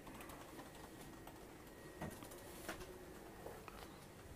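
Faint, irregular clicks and taps over quiet room tone, a few of them slightly more distinct around the middle.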